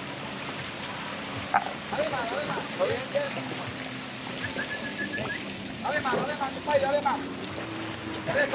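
A boat on its trailer being hauled up a launch ramp out of the water: a steady low engine hum, with water running off the hull and trailer.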